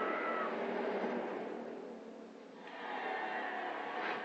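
Movie trailer audio heard through computer speakers: an animated animal's pitched cry at the start, fading to a brief lull, then music swelling up about three seconds in.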